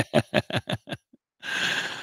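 Man laughing in a quick run of short bursts that dies away about a second in, followed near the end by an audible breath.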